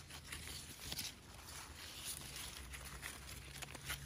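Faint rustling of persimmon leaves and twigs brushed close by, with scattered light clicks and a faint low steady hum underneath.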